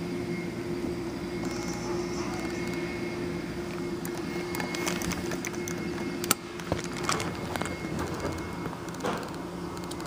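Steady mechanical hum with a constant tone throughout. About six seconds in, a sharp click as the elevator's up call button is pressed, then a few lighter clicks.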